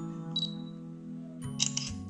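A phone app's camera-shutter sound as a stop-motion frame is captured by tapping the on-screen button, heard about a second and a half in, with a short high blip earlier. Steady background music runs underneath.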